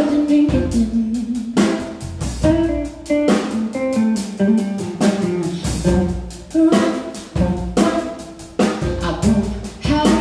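A live rock band playing: a woman singing with electric guitar, electric bass and a drum kit keeping a steady beat.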